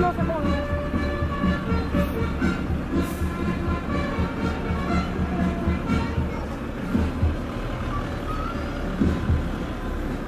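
Street parade ambience: crowd chatter and music from loudspeakers over the low rumble of vehicles passing at walking pace.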